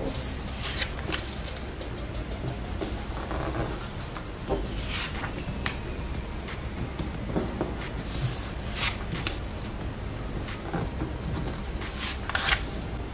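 Book-page paper being accordion-folded by hand: irregular crisp creasing and rustling as each small fold is pressed in, over a low steady hum.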